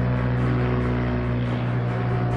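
Single-engine propeller plane's engine running steadily at high power during its takeoff roll: a loud, even drone with a strong low hum and airy hiss.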